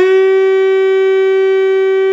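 Saxophone mouthpiece and neck blown on their own, without the body: one long, steady, loud note at a single pitch.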